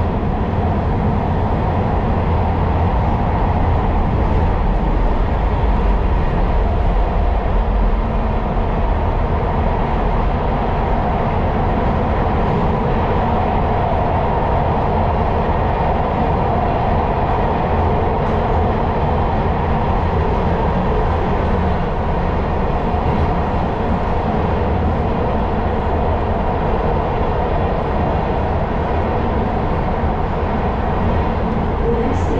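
Steady running noise of a MARTA subway car heard from inside the car: a continuous low rumble with a rushing band of wheel and track noise above it, unbroken throughout.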